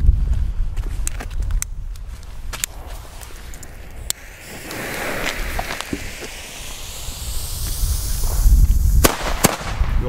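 Two WECO cubic cannon-cracker firecrackers going off: their fuses hiss for a few seconds, then two sharp bangs about half a second apart come near the end.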